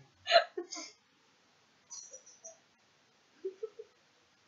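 A short burst from a person's voice, like a hiccup or gulp, in the first second, followed by a few faint brief sounds and a short low voiced sound near the end.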